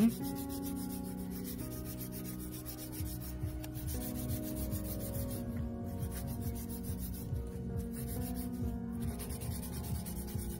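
A 180-grit hand nail file rasping back and forth over a sculpted artificial nail in repeated strokes, shaping it square. Soft background music with held notes plays underneath.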